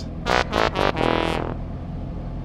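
Short synthesized 'fail' sound effect: a few quick pitched notes, then a longer one that fades out.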